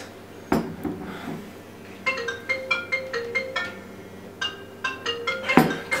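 A mobile phone ringing with an incoming call that nobody answers: its ringtone plays a quick melody of short pitched notes, twice. A single knock comes about half a second in.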